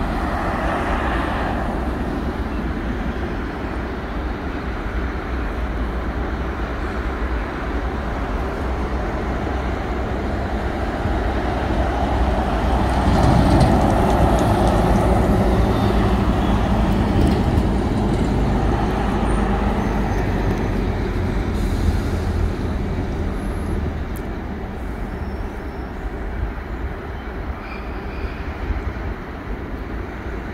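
Road traffic passing close by: a steady low rumble of vehicles, with a car going past loudest about halfway through, then dying away.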